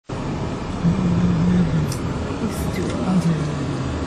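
Steady road and engine noise of a vehicle driving through a city street, heard from inside the vehicle, with a low drone that rises twice and fades.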